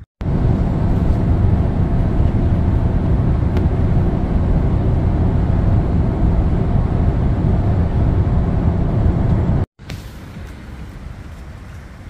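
Adria motorhome driving along a motorway: a loud, steady drone of road, tyre and engine noise. It cuts off suddenly near the end, giving way to much quieter outdoor ambience.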